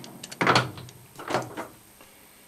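Metal lathe being stopped, its four-jaw chuck winding down to a halt, with two short scraping noises about half a second and a second and a half in.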